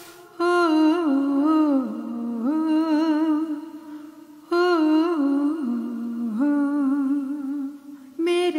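A singer humming a wordless, ornamented melody in two long phrases, with a short gap between them: the opening of a Dogri-Pahari folk-style title song.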